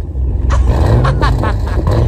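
Chevrolet Camaro's engine revved hard, a deep exhaust rumble that swells and rises in pitch twice.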